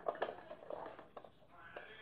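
Faint, irregular clicks and light knocks from a hand working at the back of a Sterling & Noble battery pendulum wall clock, setting its pendulum going.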